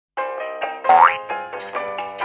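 Short intro jingle: a quick run of bright pitched notes, with a fast upward swooping sound effect about a second in, the loudest part.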